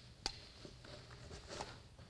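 Pair of kamas being tossed and caught in the hands: one sharp click about a quarter second in as a handle lands in the palm, then a few faint soft taps.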